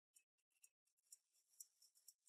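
Near silence, with a few very faint ticks.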